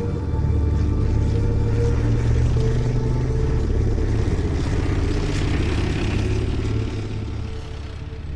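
Tank engine running as the tank drives past, a heavy steady rumble that eases off near the end, with background music.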